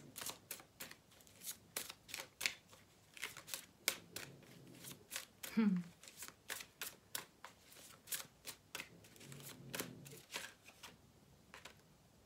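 A deck of tarot cards being shuffled by hand: an irregular run of quick, crisp card clicks and flicks that stops about a second before the end.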